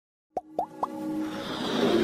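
Intro logo sound effects: three quick pops about a quarter second apart, followed by a swelling whoosh as music builds up.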